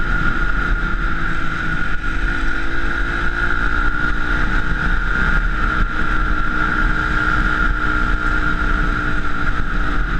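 Honda dirt bike engine running at a steady cruising speed, its note lifting slightly about two seconds in, with a steady high-pitched whine over it. Wind buffets the helmet-mounted microphone.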